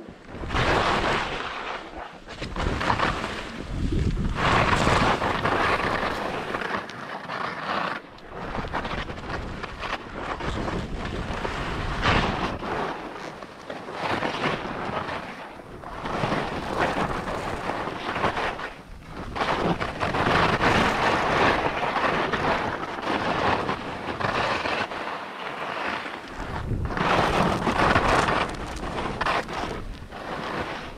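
Skis scraping and carving over hard snow through a run of turns, with wind rushing over the microphone; the noise swells and fades over and over as the turns come.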